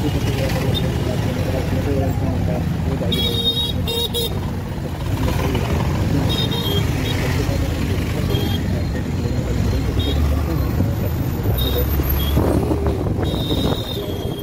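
Steady rumble of a motorcycle being ridden through dense town traffic, with short high-pitched vehicle horn beeps from the surrounding traffic sounding several times.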